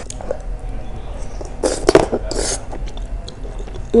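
Close-miked chewing of a mouthful of soft, egg-thickened basoaci soup, with wet mouth clicks and two louder bursts about halfway through.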